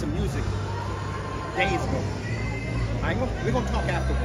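Several people talking at once in a large, reverberant hall, making a murmur of conversation. Low sustained music plays underneath and grows louder near the end.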